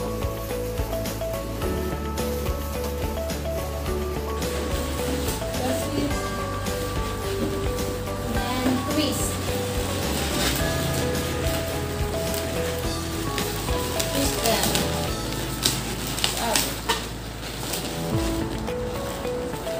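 Background music, with latex modelling balloons rubbing and squeaking under it from about four seconds in as long balloons are twisted and wrapped around round balloons.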